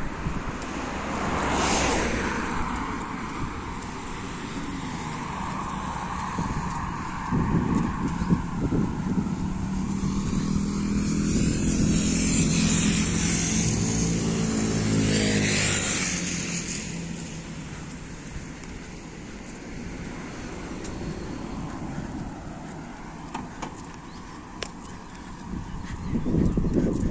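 Road traffic: a vehicle drives past about halfway through, its engine note falling in pitch as it goes by, over quieter traffic noise before and after.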